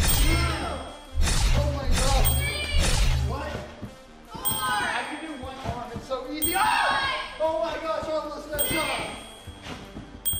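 Edited-in chime sound effects, one for each counted handspring, roughly every one to two seconds, over background music with a bass beat that stops about three and a half seconds in. Soft thuds from landings on the trampoline bed come through in the second half.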